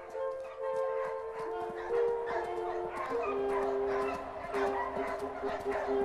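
Music of long held notes with a pack of hunting hounds barking and yelping over it.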